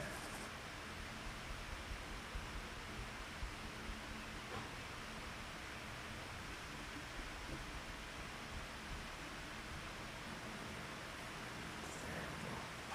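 Steady background hiss of room noise, with faint rustling of a paintbrush working oil paint on a canvas.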